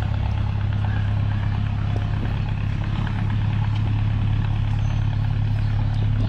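A motor running steadily with an unchanging low hum and a noisy rush above it.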